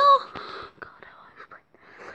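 A boy's voice finishes a word, then soft, breathy whisper-like mouth and breath sounds, with a brief near-silent gap near the end.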